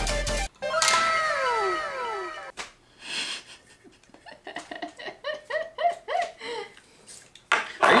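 Electronic music cuts off abruptly, then an added cartoon-style sound effect of several falling whistle tones sweeps down over about two seconds. After that comes a woman laughing in a run of short rapid bursts.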